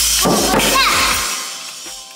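Child's toy drum set struck a few times with soft-tipped sticks, drums and small cymbal hit together in the first second or so. The cymbal's ring then fades away over the second half.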